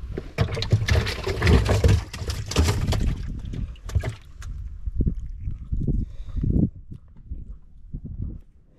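Water splashing and sloshing against a small boat for about three seconds, then several separate dull knocks.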